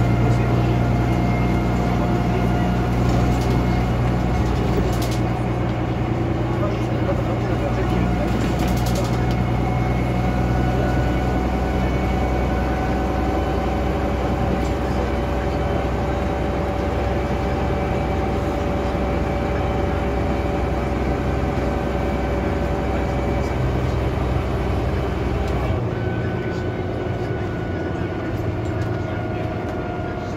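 Six-cylinder Gardner diesel engine of a 1982 Bristol RELL6G single-deck bus, heard from inside the saloon while the bus is under way: a steady low drone with steady whining tones above it. The deepest part of the drone drops away near the end.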